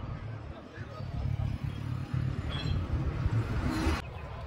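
Indistinct background voices over a low, uneven rumble.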